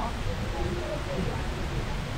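Airport terminal hall ambience: faint, indistinct voices of passers-by over a steady background hum of the large hall.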